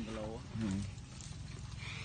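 A person's voice says a few short words in the first second, over a steady low rumble; the rest is that rumble with a faint hiss near the end.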